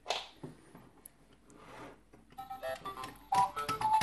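Dollhouse's miniature electronic toy keyboard being played: a quick run of short beeping notes at different pitches, starting a couple of seconds in.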